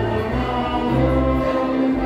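Live dance music: singing and guitar over a bass line that changes note about every half second, with long held notes.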